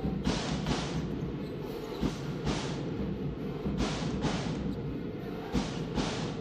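Drums beating in a repeated pattern of two quick strikes about every second and a half, over the steady noise of an arena crowd.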